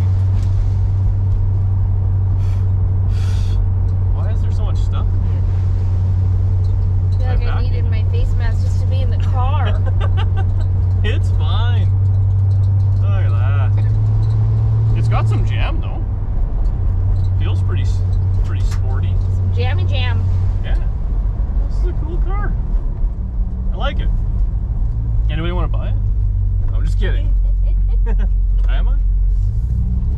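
A 1968 Plymouth Satellite's V8 engine and exhaust droning steadily in the cabin while cruising. The pitch lifts slightly around the middle and drops off when the throttle eases, then settles lower.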